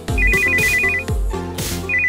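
Telephone ringtone, a rapid warbling trill between two high tones, ringing twice over electronic music with a steady bass beat.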